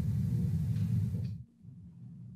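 Low, steady rumble of room noise from a home-recorded speech clip, cutting off abruptly about one and a half seconds in, with a much fainter hum after.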